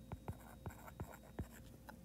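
Stylus writing on a tablet screen: a string of faint, quick taps and short strokes as a word is written by hand.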